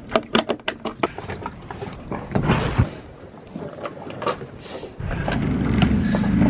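Quick metallic clinks as a hand works a stainless clip on the boat's stern, then a few knocks; about five seconds in, a steady low hum starts: a Suzuki outboard motor idling on the inflatable dinghy.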